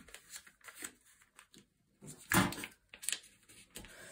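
Lined notebook paper being folded in half and creased flat by hand: a few short rustles and scrapes of paper against the tabletop, the loudest about two and a half seconds in.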